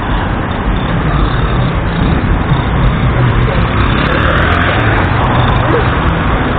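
Steady road traffic at a busy city-street intersection: motor vehicle and motorbike engines running and passing, with faint voices in the background.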